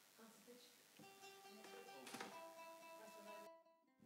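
Faint guitar notes plucked and left ringing, with a strum a little after two seconds in; the sound cuts off abruptly shortly before the end.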